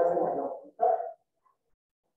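A man's voice speaking for under a second, with a short second utterance about a second in, then dead silence for the rest.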